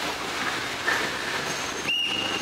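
Ferrari 488 creeping past on wet paving: a steady hiss of tyres on the wet surface over a low engine note, with a short high squeal about a second in.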